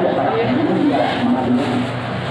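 Crowd of many people talking at once, a loud steady babble of overlapping voices.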